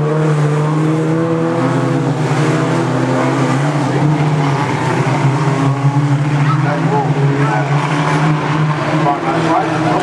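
Several Reliant Robin race cars' engines running together as they lap, a steady drone whose pitch drifts up and down slightly.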